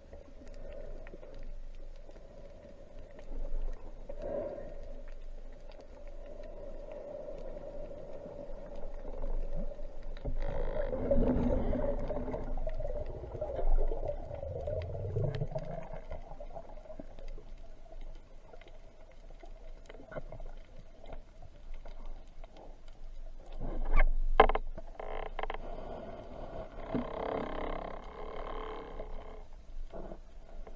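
Underwater sound heard through a camera's waterproof housing: muffled water noise with a steady hum, swelling into a louder rush of water with low rumbling about ten to sixteen seconds in. Around twenty-four seconds a few sharp knocks come close together.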